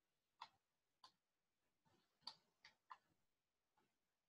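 Near silence with about five faint, sharp clicks scattered irregularly, two of them close together near the middle.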